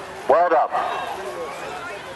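A single short, high shout from one person about half a second in, over a steady background of crowd chatter.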